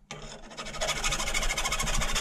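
Round file rasping and squealing against the steel rim of a BMX peg's end in one long stroke that grows louder within the first second. It is filing down the worn, inward-curled lip of the peg so a socket can reach the axle nut.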